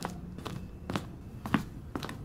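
Footsteps on stairs, a sharp step about twice a second.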